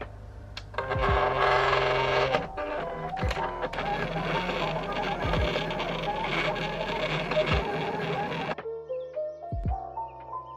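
Silhouette Portrait 3 cutting machine running a cut on a sticker sheet: a loud mechanical whirring of its moving carriage and rollers starts about a second in and stops near the end, over background music.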